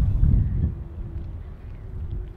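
Wind buffeting the microphone outdoors: an uneven low rumble, with a faint steady hum from about half a second in.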